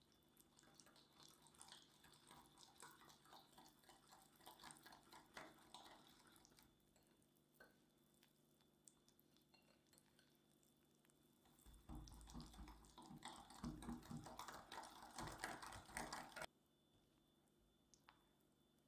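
A wire whisk beating cocoa powder into wet chocolate cake batter in a glass bowl, faint wet clicks and squelches of the whisk wires against the glass. Near the end the mixing gets louder and fuller for a few seconds, then stops abruptly.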